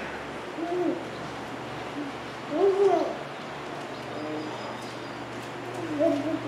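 A dove cooing: a few short, soft calls that rise and fall in pitch, the loudest about two and a half seconds in. A steady low hum runs underneath.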